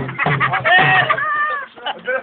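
Drum music breaks off just after the start. About a second in comes a high, drawn-out call in two parts, rising then falling, over crowd noise.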